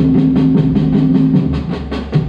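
A street drum group playing large bass drums (surdos) with sticks, a loud, fast, steady rhythm of many drums striking together, with deep pitched booms under sharper stick strokes.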